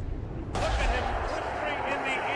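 Mostly speech: a man's voice begins about half a second in, over a low rumble.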